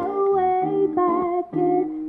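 A woman's voice singing a wavering melody line into a microphone, with a Yamaha F310 acoustic guitar, picked up by a Fishman pickup, playing underneath.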